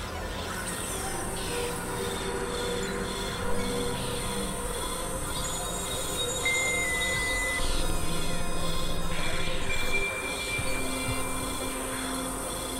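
Experimental electronic synthesizer music: a dense, noisy drone of many held tones with faint sliding, squealing glides on top, like train wheels on rails. It swells louder between about 8 and 10 seconds in.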